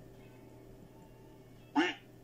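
One short, loud waterfowl call, a nasal honk lasting about a fifth of a second, near the end, over a faint steady background hum.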